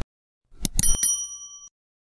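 Subscribe-button animation sound effect: a few quick mouse clicks about half a second in, then a short bright bell ding that rings for under a second and stops.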